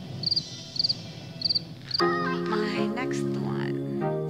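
A cricket chirping about twice a second, each chirp a quick trill of a few high pulses. About halfway through, background music with a melody starts abruptly and carries on louder.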